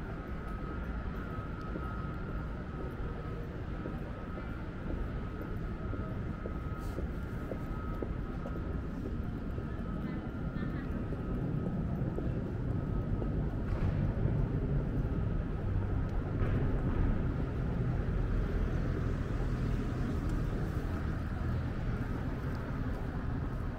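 Night-time city street ambience: a low rumble of road traffic that swells about halfway through and stays louder, with a steady high whine in the first half that fades out.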